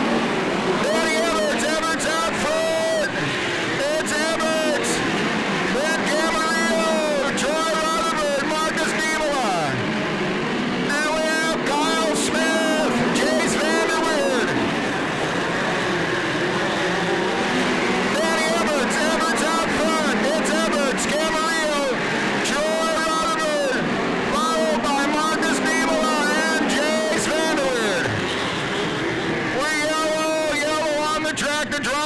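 A pack of midget race cars at racing speed, their four-cylinder engines revving up and down so that the pitch rises and falls again and again as the cars go through the turns and pass by.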